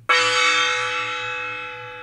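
Small handheld gong struck once with a padded mallet, ringing with many overtones and slowly fading.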